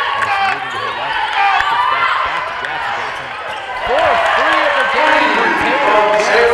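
Basketball game sounds in an arena: a ball bouncing on the hardwood court among voices in the hall.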